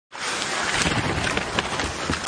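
Ice hockey game sound: steady arena crowd noise, with occasional sharp clicks and scrapes from sticks, puck and skates on the ice.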